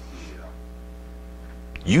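Steady electrical mains hum, a low buzz with a ladder of even overtones, heard plainly in a pause between spoken words; a man's voice comes back in near the end.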